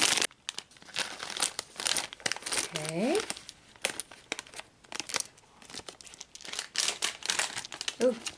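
Thin clear plastic bag crinkling and crackling in irregular bursts as small plastic toys are handled and pulled out of it. A short rising vocal sound about three seconds in.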